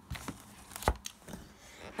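Clear plastic pocket pages of a card binder being handled: a few soft crinkles and scattered taps, the sharpest tap just before the middle.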